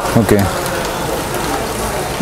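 Portable electric pressure washer running with water jetting from its spray gun: a steady hissing rush that starts about half a second in.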